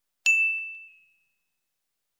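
A single ding of a notification-bell sound effect: one bright high tone struck about a quarter second in and ringing away within about a second.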